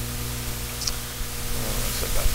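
Steady electrical hum with an even hiss over it, and one faint short high tick a little under a second in.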